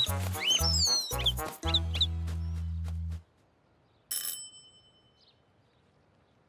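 Cartoon background music with bird chirps, which stops about three seconds in. After a second of quiet, a doorbell rings once with a bright ding that dies away over about a second.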